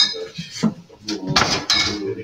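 Glass bottles clinking and knocking as they are handled on a bar counter: a sharp clink at the start and another about half a second in, then a short rustling, scraping clatter.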